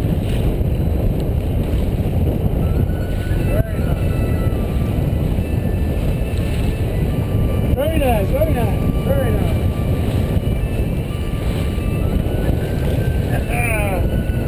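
Steady wind noise on the microphone and rushing water of a sailboat under sail, heavy and continuous. Short pitched sounds, most likely voices, break in around 8 seconds in and again near the end.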